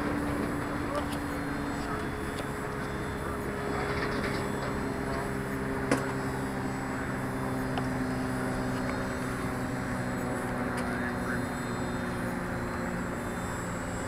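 Steady drone of a propeller aircraft in flight, several tones held steady and shifting slightly in pitch every few seconds. A single sharp tick about six seconds in.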